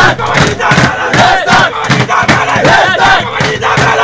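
A group of men chanting and shouting together in unison, with hands slapping and drumming on a tabletop throughout.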